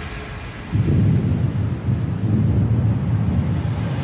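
A loud, low rumble without a clear pitch comes in suddenly under a second in and rolls on for about three seconds, standing in for the music.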